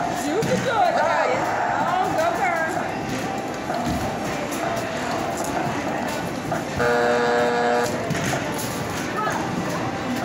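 Skee-Ball Super Shot basketball arcade machine sounds over a busy arcade's music and voices. As the game clock runs out about seven seconds in, a steady electronic buzzer tone sounds for about a second, signalling the end of the game.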